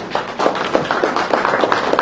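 Scattered handclaps from a small audience: a quick, uneven patter of claps.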